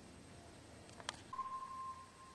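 Faint hiss, then a couple of sharp clicks about a second in, followed by a steady high electronic beep that holds on one pitch for over a second.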